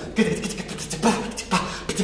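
Human voices making non-verbal mouth sounds in imitation of other sounds: hisses, clicks and short voiced bursts, like beatboxing, with three strong bursts about a second apart.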